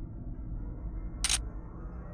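A single short, sharp hiss-like snap, like a camera-shutter sound effect, about a second and a quarter in, over a low steady hum.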